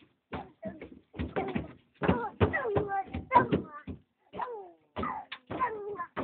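Young children's voices, high-pitched chatter and squeals in short bursts, with scattered knocks and thumps from their feet on the wooden truck bed.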